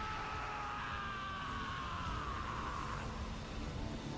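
Faint audio from the anime episode: a few held tones slide slowly down in pitch over a low, steady rumbling haze, fading out about three seconds in.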